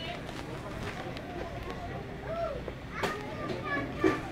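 Supermarket ambience: faint, indistinct voices of shoppers over a steady low hum, with a single sharp knock about three seconds in.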